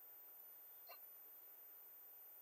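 Near silence: a pause in video-call audio, with one faint, very short sound about a second in.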